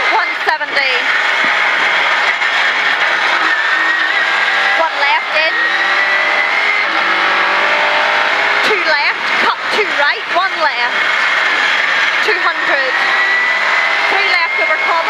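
Rally car engine heard from inside the cabin at stage pace, revving up through the gears and dropping back at each shift, over steady road and tyre noise with a constant high whine.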